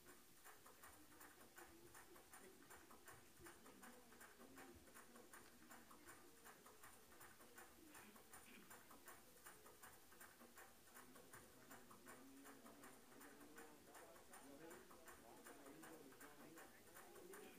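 Near silence: faint room tone with a light, rapid ticking several times a second.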